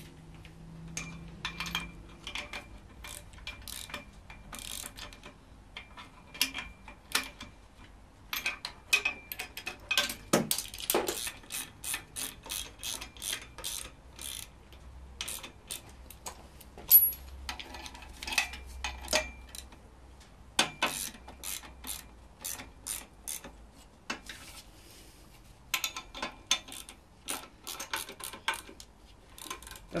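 Socket ratchet wrench clicking in runs with short pauses, as M12 bolts holding the engine-stand bracket to the engine are tightened.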